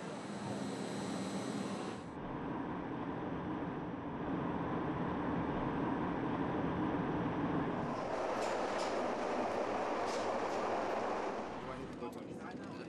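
Steady background noise of location footage that changes character at cuts about two and eight seconds in, with faint indistinct voices and a few sharp clicks in the last few seconds.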